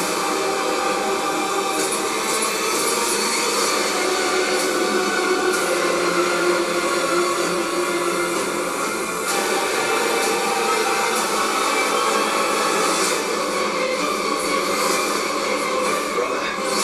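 Movie trailer soundtrack playing: a dense, steady wash of music and sound effects with no dialogue.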